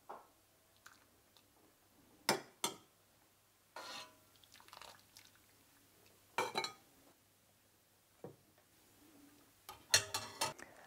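A metal skimming ladle clinks and taps against a stainless steel pot and a porcelain serving dish as boiled potato dumplings are lifted out of the water one at a time. There are several brief, sharp clinks spaced a second or more apart, one of them ringing briefly, with quiet stretches between.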